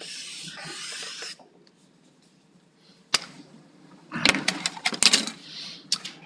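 Felt-tip marker scratching across paper in one continuous stroke of about a second and a half as a circle is drawn. Then a single sharp click about three seconds in and a run of clicks and knocks near the end.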